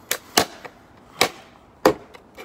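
Four sharp cracks of a golf club striking the hard plastic pieces of a broken Yonanas dessert maker and the paving beneath them, the last crack the loudest.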